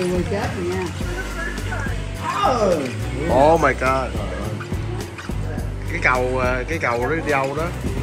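Film soundtrack playing from a tablet: English dialogue over background music.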